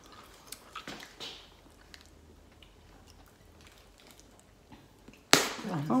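Faint wet mouth clicks from chewing bubblegum and a soft breath in the first second or so, then a quiet room, with a voice starting near the end.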